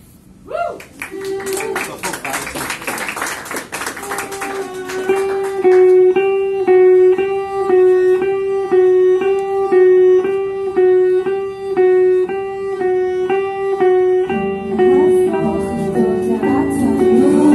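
A small live band of electric guitar, violin and acoustic guitar starting a song. Guitars are strummed for the first few seconds, then one note is repeated in an even pulse about twice a second over the strings. More parts join near the end.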